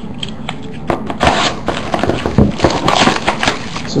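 Plastic wrap crinkling and crackling with light knocks as hands open a sealed cardboard box of trading cards. It starts quietly and turns into a dense run of crackles and clicks about a second in.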